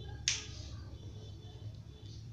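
A single sharp click, about a quarter second in, over a low steady background hum.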